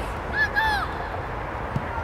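Short, high-pitched shouts from young footballers on the pitch, two quick calls about half a second in. A single short thud comes near the end, over a steady low outdoor rumble.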